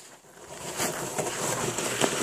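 A plastic sled sliding over packed, icy snow, a steady scraping hiss that grows louder from about half a second in as it comes closer.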